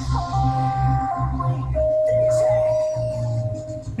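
Korean pop song playing back from a computer: an electronic beat with a steady pulsing bass and a long held note in the middle.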